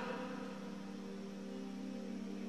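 Soft background music: a low, steady held chord that does not change.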